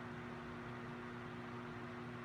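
Faint, steady room tone: a low electrical-sounding hum with a light hiss and no distinct event.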